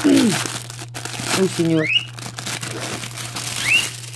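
Clear plastic bags crinkling and crackling as the plastic storage boxes inside them are handled, with a few brief vocal sounds in between.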